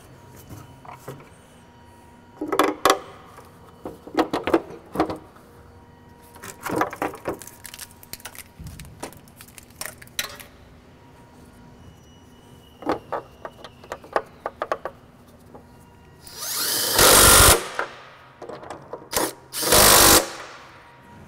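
Scattered metal clanks and knocks as the fan shroud and parts are handled, then a cordless drill-driver runs for about a second near the end while driving a screw into the shroud, with a second short run at the very end.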